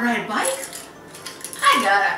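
A fork clicking and scraping on a plate, with a few light clicks in the middle, between short falling vocal exclamations from a woman.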